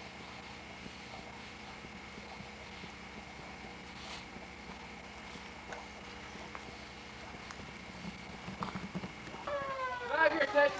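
Faint room tone on an old camcorder soundtrack: steady tape hiss and hum with a few soft clicks, and some soft low sounds near the end. About half a second before the end, louder music-like tones come in.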